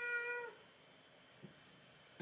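A domestic cat meowing: one long, steady meow that stops about half a second in.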